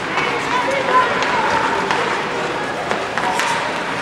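Sound of a youth ice hockey game in an arena: short shouts and calls from players and onlookers over a steady scraping haze of skates on the ice, with a sharp clack of stick on puck about three seconds in.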